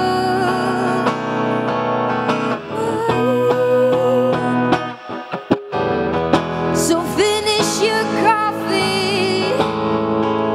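A woman singing a slow, gentle song with vibrato, accompanied by electric guitar. The music thins to a short break about five seconds in, then resumes.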